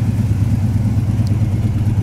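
A V8 car engine idling steadily, a loud low rumble with an even, fast pulse; most likely the GTO's 400 cubic-inch four-barrel V8.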